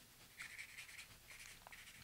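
Brush pen bristles stroking across paper card as watercolour is laid on: about three short, faint, scratchy strokes.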